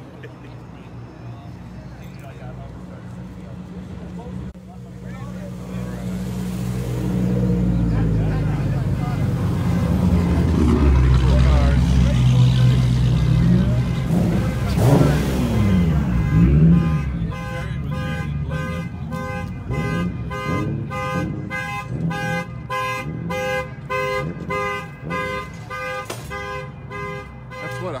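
A modified car with a loud exhaust drives past, its engine note building and revving. The exhaust then sets off a car alarm, which sounds a repeating electronic tone pattern, about two pulses a second, through the rest.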